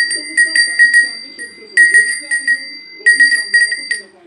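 Small hand-held metal livestock bell shaken by hand, ringing with a clear high tone in quick strokes, about four or five a second, in three runs with short breaks about one and a half and three seconds in.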